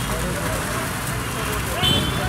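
Busy street ambience: a steady low roar with people talking in the background, and a brief high-pitched beep near the end.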